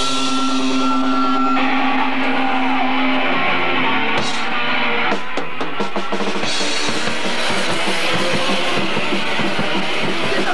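Punk rock band playing live: distorted electric guitars holding a chord over bass and drums, then a short break around the middle where the drums hit alone before the full band crashes back in.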